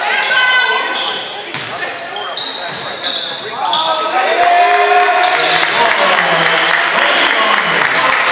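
Basketball game on a hardwood gym court: many short, high sneaker squeaks as the players move, with people's voices in the hall, loudest in the second half.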